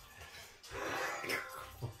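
A person's loud, breathy exhale, like a sigh, lasting about a second, followed near the end by a muttered Polish curse.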